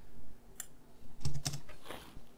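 A few short clicks of a computer keyboard and mouse, about four, spread unevenly over two seconds.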